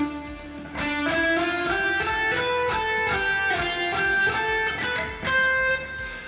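Solar AB 1.6S electric guitar playing a slow single-note alternate-picked lick in A minor. After a held opening note, the notes step mostly upward about three a second, with small drops back at the string shifts, and the run ends on a held note.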